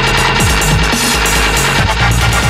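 Electronic dance music from a DJ mix: a dense, loud track with a heavy bass line and falling bass sweeps, about half a second in and again near the end.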